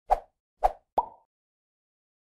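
Intro sound effect: three quick pops about half a second, then a third of a second, apart, the third carrying a brief ringing tone.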